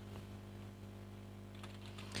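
A few faint, scattered clicks of computer keyboard keys over a steady low electrical hum.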